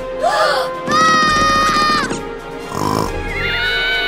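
High-pitched cartoon voice wailing over background music: a short rise-and-fall cry, then a long held note about a second in, and another wavering held note near the end.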